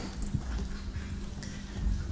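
A live microphone picking up low rumbling handling noise and a few faint knocks over a steady electrical hum.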